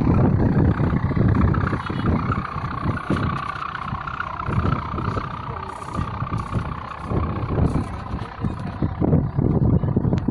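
Gusty wind buffeting the microphone, with a steady high hum under it that fades near the end.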